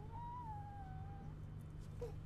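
A baby gives one drawn-out whining cry that rises and then falls in pitch, ending just past a second in.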